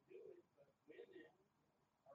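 Faint, indistinct human speech in two short bursts, with a lull in the second half.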